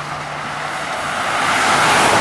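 Road traffic at a highway roadside: the tyre and engine noise of a car growing louder as it comes close, loudest near the end as it passes.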